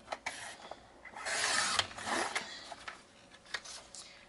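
Fiskars sliding paper trimmer cutting through cardstock: the blade carriage scrapes along its rail for about a second, with a few light clicks and taps of the trimmer and paper around it.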